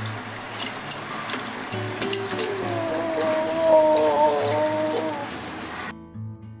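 Wet scraping and slopping of chicken curry being tipped from a bowl onto rice in a cooking pot, with small clicks against the pot over a steady hiss. Background music plays underneath, its melody clearest in the second half. The kitchen sound cuts off abruptly at the end.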